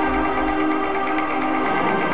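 Live electronic music played on synthesizers: steady held chords, with a deep bass note swelling in at the start.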